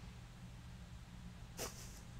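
Quiet room tone with a steady low hum, and one short breath through the nose about one and a half seconds in.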